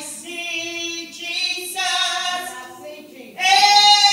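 A woman singing solo into a handheld microphone, holding long sustained notes, with a louder phrase starting a little past three seconds in.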